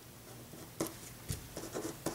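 Pen writing on paper: a few short, scratchy strokes, starting just under a second in.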